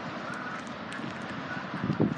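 Steady outdoor background noise of road traffic, an even hum with no distinct events.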